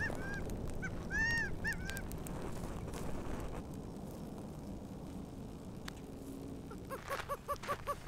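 Birds calling: a few short arched calls in the first two seconds, then a quick run of evenly spaced notes near the end, over a low outdoor noise haze.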